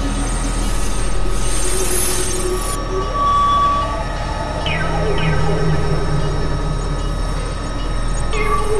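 Experimental electronic noise music from synthesizers: layered drones and held tones over a steady low hum. A wash of high hiss comes in the first few seconds, and a pair of falling pitch sweeps about halfway through is followed by a held low tone.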